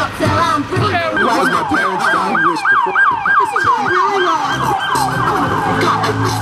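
Police car siren on its fast yelp setting, its pitch sweeping up and down about four times a second. It starts about a second in.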